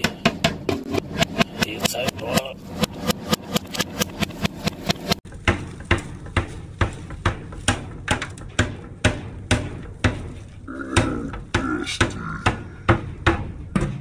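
Clear plastic vacuum dust canister being knocked again and again against the rim of a metal dumpster to shake out packed lint and dust, about four knocks a second.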